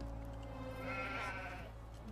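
A goat bleating once, a single call about a second in, over a low steady hum.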